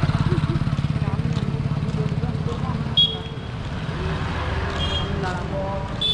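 Motorcycle engine running close by, its low pulsing loudest at the start and fading over the first three seconds, with a short high beep about three seconds in.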